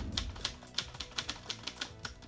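Typewriter sound effect: keys striking one after another at about six or seven clacks a second.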